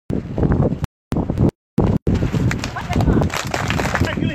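People's voices outdoors, with the sound dropping out completely twice for a moment in the first two seconds.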